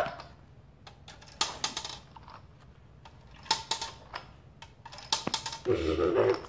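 Plastic Connect 4 discs dropped into the upright grid, each rattling down its column in a short burst of clicks. Two such drops come about two seconds apart, with a single click later on.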